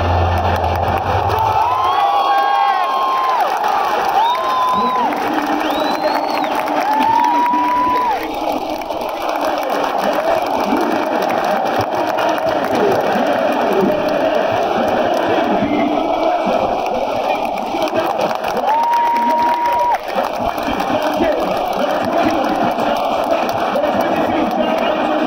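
Packed football stadium crowd cheering: a loud, steady, dense wall of voices. A few long high calls rise above it, several in the first eight seconds and one more near the end.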